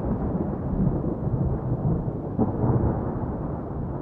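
Low, thunder-like rumble of a cinematic intro sound effect, the tail of a logo hit, fading slightly.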